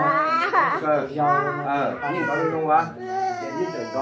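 Men talking, their voices overlapping and rising and falling in pitch throughout.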